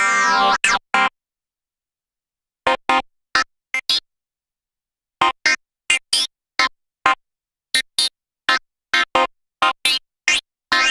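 Original Clavia Nord Lead virtual-analog synthesizer playing a preset: a held note whose brightness sweeps, two short notes, then silence. Short, clipped notes follow in small groups, then a quicker run of them with dead silence between each.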